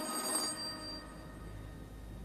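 A bell-like metallic ring dying away over the first second as the Carnatic music stops, leaving a low steady hum.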